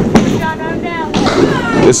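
Candlepin bowling ball rolling down a wooden lane with a low rumble, then the clatter of thin candlepins being knocked down near the end.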